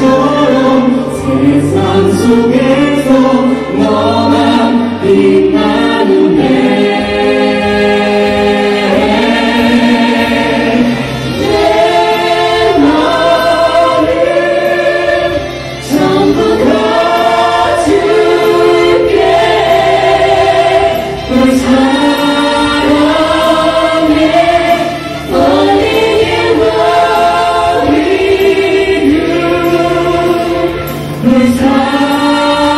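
A song sung by several voices in harmony over an accompaniment, the notes held long and changing every second or two.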